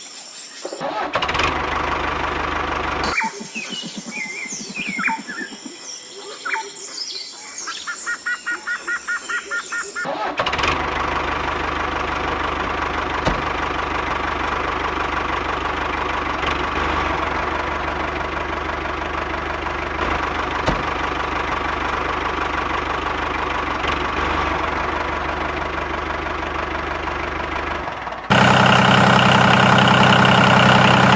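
Birds chirping for the first ten seconds, then a steady engine running sound. Near the end it gives way abruptly to a much louder engine idling with a deep, even throb.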